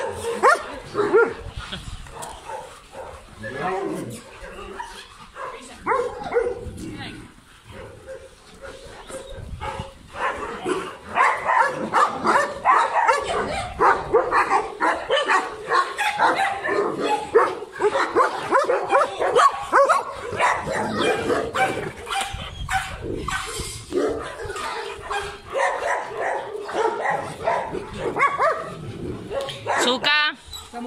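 Many dogs barking and yipping together in a busy, overlapping chorus. It is thinner in the first part and fills out into a denser din from about a third of the way in.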